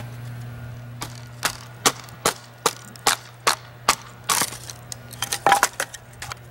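A fixed-blade knife with a D2 tool steel edge shaving curls off a wooden stick, making a feather stick. It goes in a steady rhythm of short, sharp strokes, about two and a half a second, about a dozen in all.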